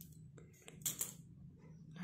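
Scissors snipping off the cotton yarn tail: a few light sharp clicks, the sharpest two in quick succession about a second in.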